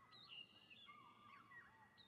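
Very faint bird calls: short rising and falling chirps and whistles, a jungle ambience from the anime's soundtrack.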